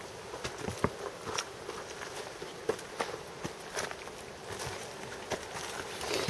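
Footsteps of several people walking on a dirt and rock trail: irregular, separate steps.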